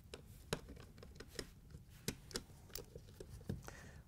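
Faint, scattered clicks and ticks of a 5/16-inch nut driver turning out the screws that hold a dishwasher's counterbalance weight.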